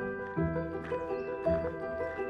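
Background music: layered, held melodic notes over a low bass note struck about once a second.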